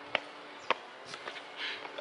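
Two short, sharp clicks about half a second apart, then a faint hiss near the end.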